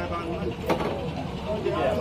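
People talking, with a steady low rumble underneath and one sharp knock a little after half a second in.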